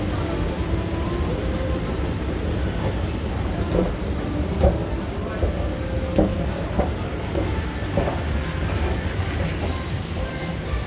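Escalator running: a steady low rumble with a regular clack about every two-thirds of a second, from a few seconds in until near the end.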